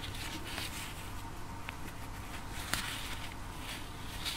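Faint rustling and small clicks of a steel crochet hook and cotton thread being worked into stitches around an egg, with one slightly sharper click near three seconds in, over a steady low hum.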